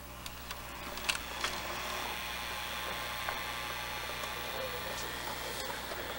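Hitachi-built RCA VCR mechanism threading a cassette when play is pressed: a few clicks from the loading mechanism in the first second and a half, then the head drum and tape drive spinning up to a steady whir as playback starts, over a steady mains hum.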